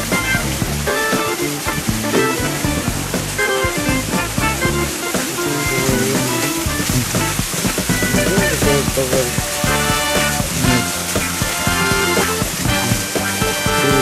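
Music with steady held notes over the constant rush of a small garden waterfall splashing into a pond.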